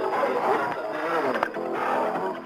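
Music played over a shortwave radio broadcast, heard off the air with the thin sound and background noise of shortwave reception.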